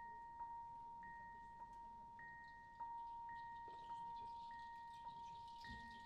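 Soft, bell-like notes an octave apart, struck in turn about every half second, each ringing on under the next, as a quiet repeating figure in a jazz trio's music. Near the end, cymbal shimmer and low bass notes come in.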